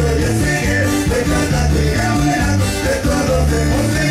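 Cumbia music played by an accordion, guitar and bass band with a steady beat.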